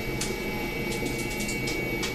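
Steady background hum and hiss on the call line, with a thin steady high tone and a few faint clicks.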